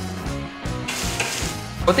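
Diced carrots and onions sizzling in hot oil in a frying pan as they are stirred with a spatula. The hiss grows denser about a second in. Background music plays under the first half.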